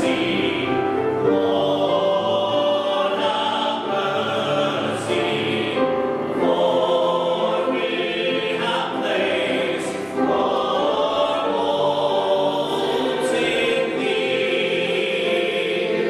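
A mixed church choir of men and women singing, with long held notes that shift from one chord to the next.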